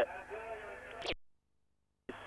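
Faint male commentator speech in an old broadcast soundtrack, which cuts off suddenly to dead silence about a second in.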